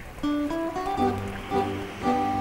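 Instrumental intro of a folk song on plucked strings, with a bass line coming in about a second in.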